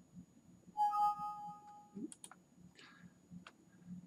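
Two-note rising computer alert chime about a second in, signalling a 'Vendor Not Found' error dialog popping up during the import. A few mouse clicks follow.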